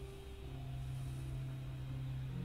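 Yamaha Clavinova CLP-775 digital piano sounding a few soft held notes in a concert grand piano voice, with a new low note coming in about half a second in.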